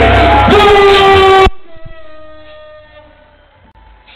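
Loud arena public-address music with heavy bass and a long held note, cut off abruptly about a second and a half in, leaving only a faint fading tail.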